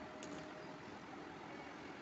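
Steady faint background noise, with one light click about a quarter of a second in.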